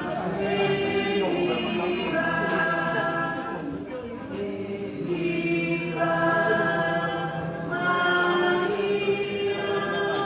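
A group of voices singing a hymn together in long held phrases, with short breaks between the phrases.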